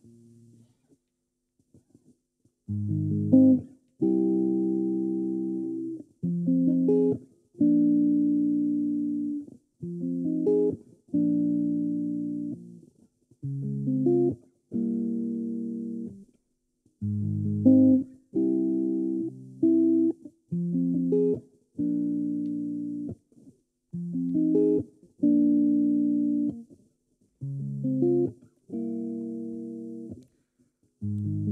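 Solo electric guitar playing an unaccompanied intro in a clean tone. From about three seconds in, chords are struck one after another, each left to ring for a second or two before a quick change.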